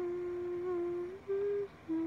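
A woman humming a tune with her mouth closed: a few held notes that step up and down in pitch, with a short break between phrases.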